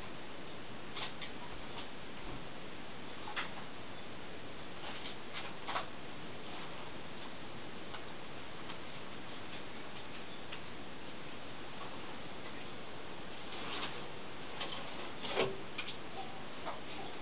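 Steady hiss with scattered small clicks and taps, a few early and a cluster near the end: handling noise from the microscope and the camera held to its eyepiece while the view is moved and refocused.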